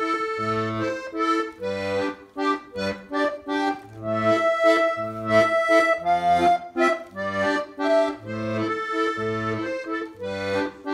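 Small button accordion playing a waltz: a melody in the right hand over a steady left-hand accompaniment of low bass notes alternating with chords. Near the middle, one long high melody note is held for about two seconds.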